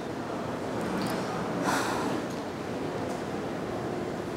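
Steady background hiss of location ambience, with a person's short, breathy exhale a little under two seconds in.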